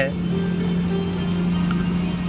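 Steady low hum of a car driving along, heard from inside the cabin, with background music.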